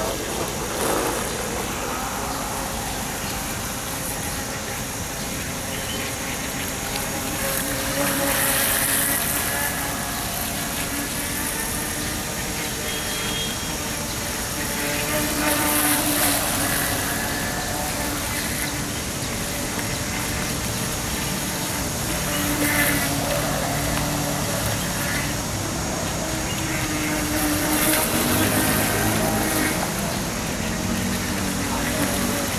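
Radio-controlled model speedboat running at speed on a pond: a steady motor hum that shifts in pitch, with a hiss of spray that swells several times as the boat passes close.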